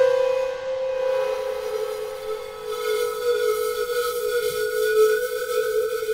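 Suspense film score: one long held note, loudest at the start as it carries on from a sudden sting, with shimmering high sound building up about halfway through.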